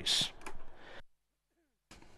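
A commentator's microphone: the voice trails off in a short hiss and fades. The sound then drops out completely for about a second and comes back with a click and faint room noise.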